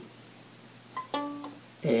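A violin's D string plucked once, pizzicato, about a second in. The note rings briefly and dies away within about half a second.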